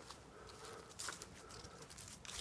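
Faint rustling and crackling in dry leaf litter and undergrowth, with a brief louder crunch about a second in, over a faint steady high tone.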